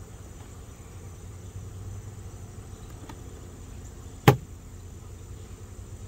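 A single sharp knock about four seconds in, as the plastic swarm box is bumped over the hive body to dump the last bees out, over a steady low hum of insects.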